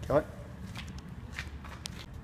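A single short spoken word, then soft footsteps on a concrete floor with a few light clicks.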